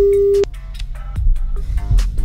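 Telephone ringback tone, one steady single-pitch ring, cutting off about half a second in: the called line is ringing unanswered. After it, a background music bed with a steady beat continues.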